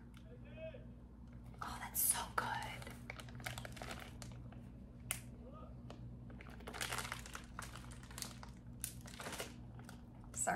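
Clear plastic bag around a wax melt container crinkling as it is handled, in irregular bursts.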